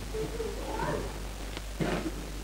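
Faint high-pitched vocal sounds that glide up and down in pitch, with a short knock near the end.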